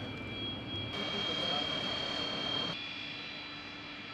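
Steady high-pitched whine from engine-like machinery over a haze of outdoor noise and indistinct voices. The background changes abruptly about a second in and again near three seconds in.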